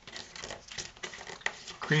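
A cardstock strip rustling and crinkling under the fingers as it is folded in half lengthwise and creased down, heard as a run of short, irregular scrapes and clicks.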